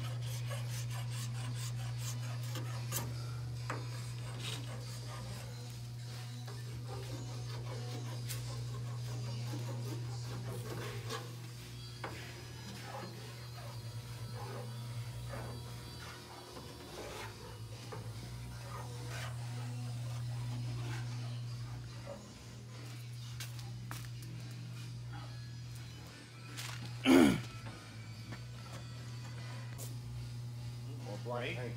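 A hand tool scrapes and rubs intermittently on the bare steel body panel, with scattered small clicks, over a steady low hum. Near the end there is one loud, brief sweep falling in pitch.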